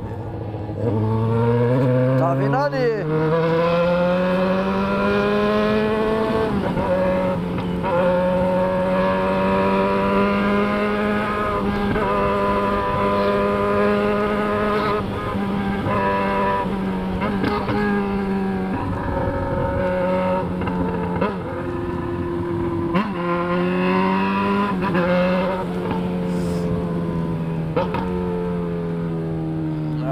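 Yamaha XJ6's 600 cc inline-four through a straight-piped 4-into-1 exhaust, heard from the saddle under hard riding: it pulls up through the revs over the first six seconds, then holds a steady high note with a couple of dips just past the middle and falls away near the end. About two to three seconds in, another engine's note sweeps past.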